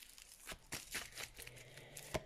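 Tarot cards being handled as one is drawn from the deck: a few faint, soft clicks and rustles of card stock.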